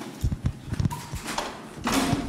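Handling noise at a lectern: a quick run of dull, low knocks and thuds, then a short rustle just before the end, as equipment is handled.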